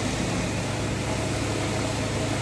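A steady low machine hum over an even wash of city street noise.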